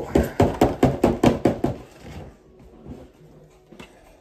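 A bag of playing cards shaken hard: a quick run of rattling shakes, about five a second, for roughly two seconds, then softer rustling as the cards are handled.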